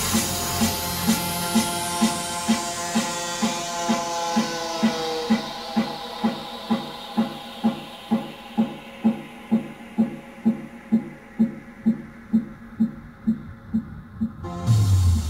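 Electronic dance music played through a DJ mix: a steady beat of about two pulses a second under held synth tones, while the high end is swept away gradually until only the beat and the lower tones are left near the end.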